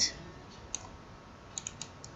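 A few faint, sharp clicks of a computer mouse: one alone, then three in quick succession a second later.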